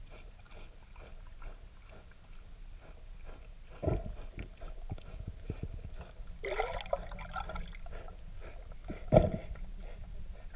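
Underwater sound of a manatee grazing on the bottom: a steady run of small clicks and crunches from its chewing. Two heavy thumps come about four and nine seconds in, and a brief rising squeal near the middle.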